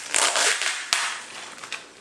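Scissors cutting into bubble wrap, with the plastic crinkling in two bursts and a sharp snip about a second in.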